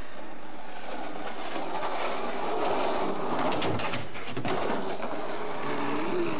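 Skateboard wheels rolling on a paved path, a steady rumble with a few brief clicks around the middle.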